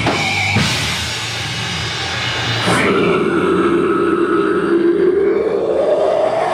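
Deathgrind band playing live with drums and distorted instruments for the first few seconds; about three seconds in the drumming thins out and a single long distorted note is held, its pitch rising near the end.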